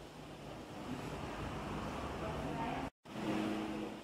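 Low background rumble, like traffic passing outside, that swells about a second in, with faint voices in the background; it breaks off abruptly just before three seconds and resumes as a steadier hum.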